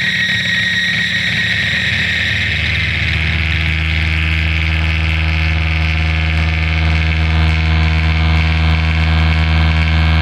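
Electric guitar leaning against a Fender amplifier, feeding back through Death By Audio effects into a loud, steady, distorted noise drone. A deep hum swells about three seconds in under a hissing high band, and a thin high whistle fades away over the first few seconds.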